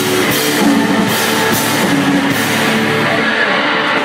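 Post-punk band playing live and loud: a distorted electric guitar over a drum kit with crashing cymbals. The full band drops away near the end, as the song finishes.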